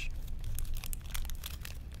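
A plastic candy-bar wrapper being torn open and crinkled by hand, a run of quick crackles throughout.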